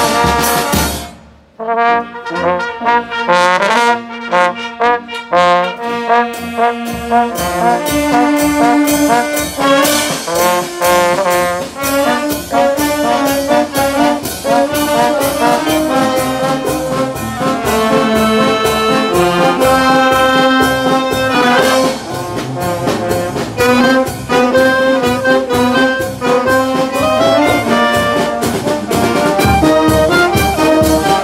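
A wind band of clarinets, saxophones and trombone playing a piece. The music breaks off briefly about a second in and comes back in a lighter passage without the low notes. The low instruments join at about seven seconds and the full band plays on.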